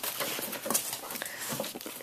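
A dog breathing and sniffing close to the microphone: irregular short, noisy puffs with faint rustling.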